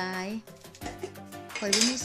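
Metal kitchenware clattering once near the end, a short sharp rattle of a stainless-steel bowl and dishes being handled, over background music.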